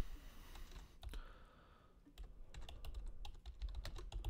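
Faint typing on a computer keyboard. A few key clicks come in the first second, then a short pause, then a quicker run of keystrokes in the second half.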